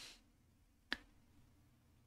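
A single short, sharp click about a second in, otherwise near silence.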